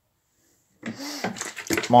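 Dead silence, then a man starts speaking a little under a second in.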